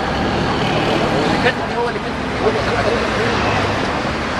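City street noise: a steady traffic rumble with engine hum, under the voices of people talking.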